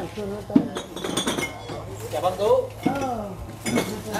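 Dishes and cutlery clinking, with a sharp clink about half a second in, while people talk in the background.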